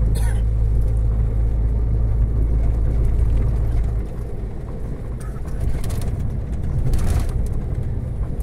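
Heavy truck's diesel engine and road noise heard inside the cab while driving, a low drone over steady rumble. About halfway through the low engine note drops away and the sound gets a little quieter.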